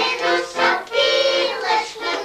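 Young children singing a song together in chorus, with an accordion playing along.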